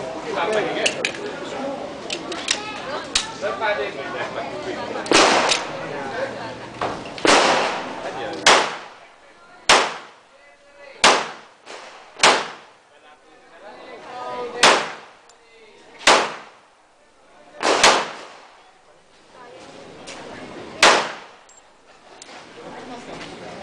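Pistol shots fired one at a time at a slow, deliberate pace, about nine of them one and a half to three seconds apart, each with a short echo. Lighter clicks and a murmur fill the first few seconds.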